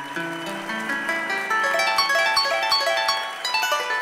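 Venezuelan llanera harp (arpa llanera) playing the opening of a joropo seis: quick cascading runs of plucked treble notes over held bass notes.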